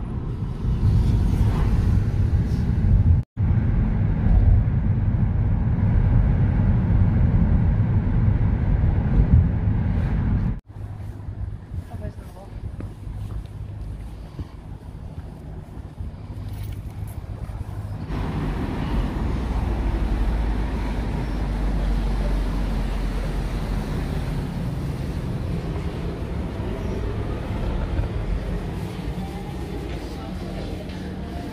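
Steady low rumble of road and engine noise inside a moving Nissan car's cabin, cut off abruptly twice; after about ten seconds it gives way to quieter street ambience.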